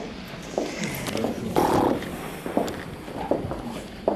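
Handling and movement noise in a hall with a stone floor: scattered knocks, clicks and footsteps as people move about, with a louder burst about a second and a half in.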